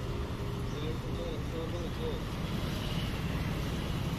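Steady rumble of passing road traffic, with faint voices in the background about a second in.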